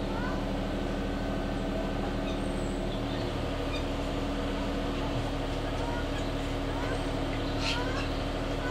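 Birds chirping in short rising calls, one every second or so, over a steady low mechanical hum.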